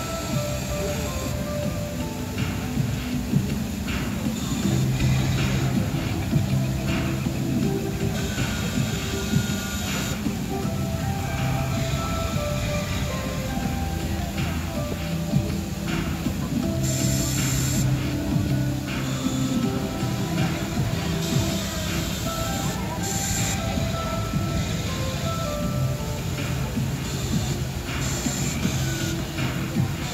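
Music plays over a steady low rumble, the rumbling soundtrack of the Rainforest Cafe's show volcano during its eruption. A few brief hissing bursts break in along the way.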